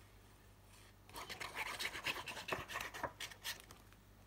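After about a second of quiet, a run of dry rustling and scratching as a sheet of patterned craft paper is handled, lasting a little over two seconds.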